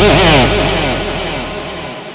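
A live band's closing chord ringing out and fading away, with an electric guitar note wobbling and sliding down in pitch. A low bass note stops just before the end.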